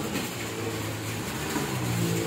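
A vehicle engine running at a steady pitch, growing louder toward the end.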